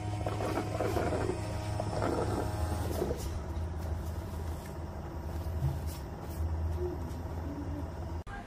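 Roborock Q Revo base station running with the robot docked in it: a steady low machine hum, with rattling and whirring over it during the first three seconds.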